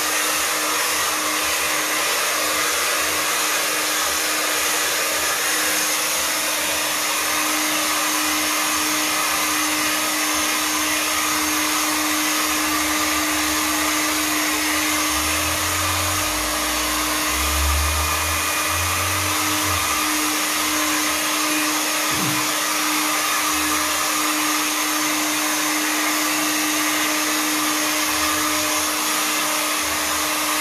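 Handheld hair dryer running steadily for the whole stretch, a continuous rush of air over a steady low motor hum.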